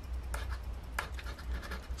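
A coin scratching the coating off a lottery scratch-off ticket in a few short rubbing strokes, over a steady low hum.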